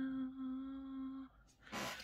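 A woman humming one held low note, the end of a sung "da-da", which stops a little over a second in; a short soft hiss follows near the end.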